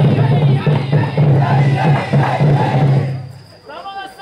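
A huddled group of men chanting and shouting together in a steady rhythm, breaking off about three seconds in. Near the end a single high, held note rises in and holds.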